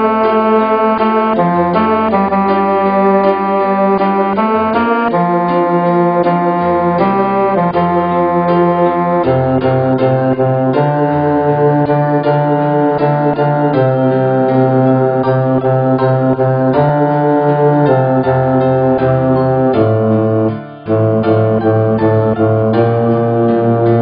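Synthesized score playback of a men's-choir anthem arrangement, the sung parts rendered as sustained synthetic tones over a piano accompaniment of repeated chords, with a strong bass line. The sound briefly breaks off near the end.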